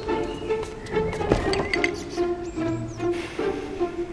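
Background music played by bowed strings, violin and cello, moving through a run of short held notes.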